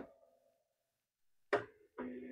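Near silence, broken by one short, sharp knock about one and a half seconds in.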